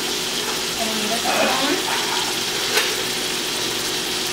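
Corn, sweet peas and tofu cubes sizzling as they fry in a metal pan, a steady hiss, with a single light knock about three seconds in.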